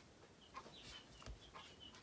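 Near silence, with a bird chirping faintly in the background: several short, high, falling chirps.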